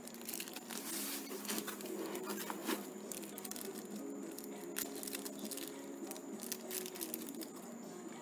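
Small clear plastic packet crinkling and rustling in the fingers as it is handled and opened, with many small irregular clicks and crackles.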